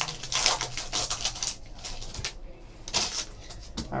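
Wrapper of a pack of trading cards crinkling and tearing as it is opened by hand: a run of crackles in the first second and a half, quieter handling, then another burst of crackling about three seconds in.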